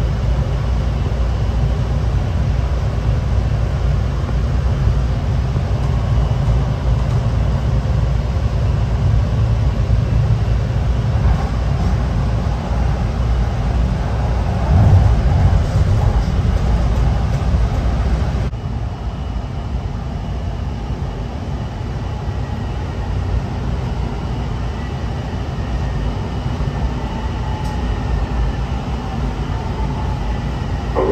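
Honolulu Skyline metro train running on its elevated guideway, heard from inside the car: a steady low rumble that drops abruptly quieter a little past halfway, then a faint falling whine as the train slows into a station.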